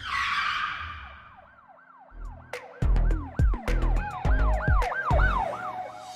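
Channel logo intro sting. It opens on a whoosh-like hit that fades, then a rapid rising-and-falling siren sound effect repeats about three times a second, with heavy bass hits joining about halfway through.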